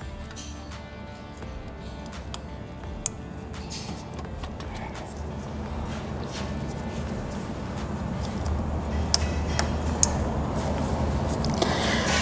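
Background music, steady and slowly growing louder, with a few faint sharp clicks.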